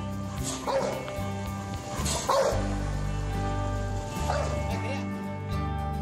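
Rottweiler barking three times, about two seconds apart, over background music.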